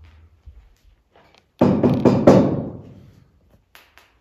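A hardened, lime-stabilized earth sample being knocked and rubbed in the hands: a few light clicks, then a sudden run of hard knocks about one and a half seconds in that dies away after a little over a second.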